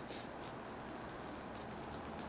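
Burning bouncy ball crackling faintly, a steady fine crackle from the melting, flaming ball.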